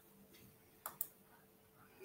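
Two quick computer mouse clicks close together about a second in, over faint room tone.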